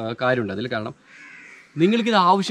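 A man speaking briefly, then about a second in a single harsh bird caw lasting about half a second.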